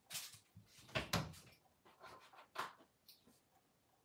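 Faint, irregular knocks and clinks of kitchen items being handled while coffee is fixed with sweetener and creamer, about six short sounds spread over the few seconds.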